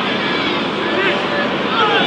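Football crowd noise: many voices calling and shouting over one another in a steady din.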